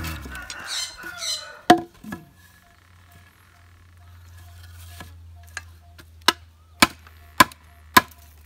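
A machete chopping into a thick-walled green bamboo stem, striking about twice a second and growing louder over the second half. Before that there is a rustle and two sharp knocks as the cut bamboo piece is handled and knocked on the ground.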